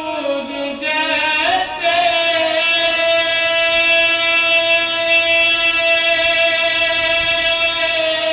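A man's voice reciting a naat, sung and held on one long note: the voice slides up about a second and a half in, then holds the note steady for about six seconds.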